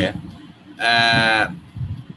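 A man's drawn-out 'aah' of hesitation between sentences, held on one steady pitch for just over half a second.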